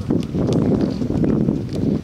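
Several sharp thuds of footballs being kicked, over a loud, low rumbling noise.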